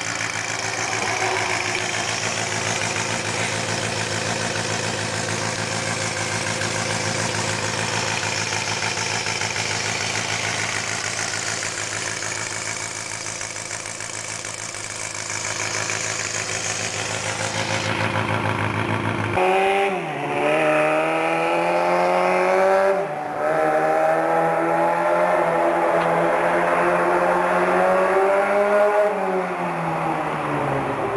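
Small-capacity 250 cc four-cylinder motorcycle engine fitted in a handmade mini bike, running steadily at a fast idle. About two-thirds through the sound changes abruptly to the bike being ridden, the engine revving up and dropping back several times.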